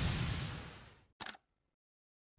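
Transition sound effects: a noisy whoosh fades out within the first second, followed a moment later by one short, sharp click.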